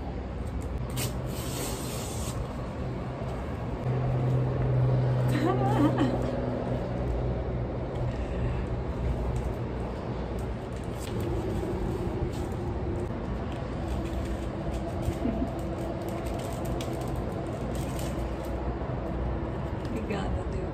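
Paper envelope and papers being handled and opened by hand, with a short rustle about a second in and light crinkling after, over a steady low background hum.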